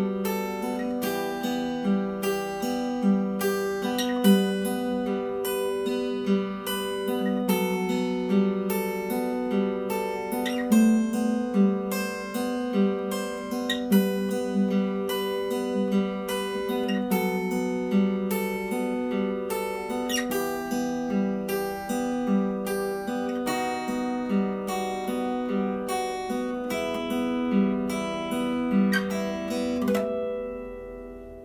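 Acoustic guitar fingerpicked, a steady arpeggio of single plucked notes repeating one picking pattern as the chords change.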